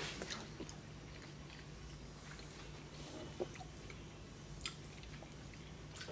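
Faint mouth sounds of a man chewing a bite of soft, caramel-like brown goat cheese, with a couple of small clicks, over a low steady hum.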